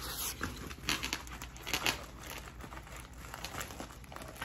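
Plastic packaging and bubble wrap crinkling in irregular bursts as it is handled and pulled open.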